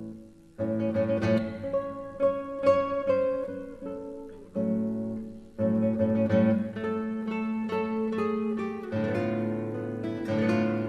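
Solo classical guitar playing a slow, dramatic passage. Strummed chords ring out in phrases: the first comes in about half a second in and fades, and fresh chords are struck about four and a half and five and a half seconds in.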